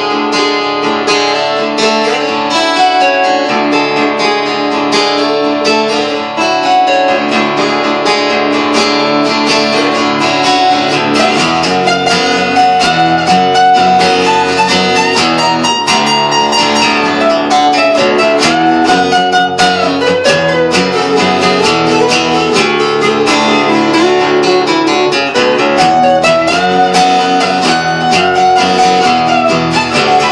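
Two acoustic guitars played together in an instrumental passage of a song, chords strummed steadily.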